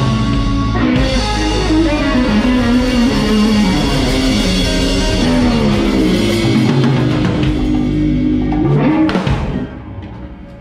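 Live rock band playing: drum kit, electric guitars, bass, keyboard and congas together. The song ends on a final hit about nine seconds in, which rings down.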